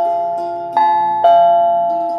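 Two-tone ding-dong doorbell chime: a higher note, then a lower one half a second later, each ringing on and slowly fading. The pair sounds a second time just under a second in, over soft background music.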